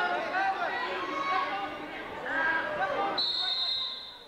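Many people talking at once in a gymnasium, with voices overlapping and echoing in the hall. About three seconds in, the voices drop away and a steady high-pitched tone sounds for under a second.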